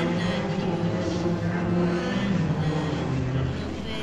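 Many copies of the same soundtrack playing on top of one another, out of step, so that their voices and tones blur into a dense, steady drone that eases off slightly near the end.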